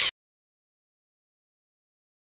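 A short hissy transition sound effect of a photo slideshow, with two quick peaks, cutting off just after the start; the rest is dead digital silence.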